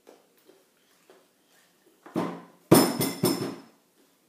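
A short clatter at the breakfast table, three or four sharp knocks about half a second apart with a faint swelling sound just before them, like a spoon or plastic tub knocked against the wooden tabletop. A few faint light ticks come before it.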